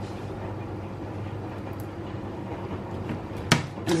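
A steady low kitchen hum with no other activity, then a single sharp knock near the end as a hand reaches to the metal roasting pan.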